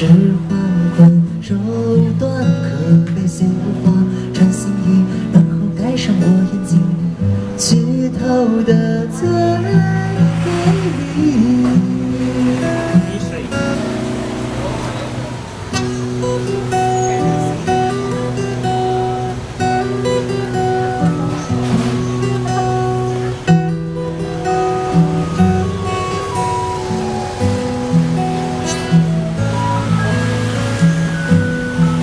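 Steel-string acoustic guitar played solo, an instrumental passage of picked notes and ringing chords with a changing melody line.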